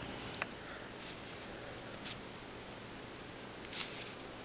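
Handling noise of an iPod touch in a fitted case on a wooden table: a sharp click about half a second in, a few faint taps, and a brief rustle near the end as it is picked up.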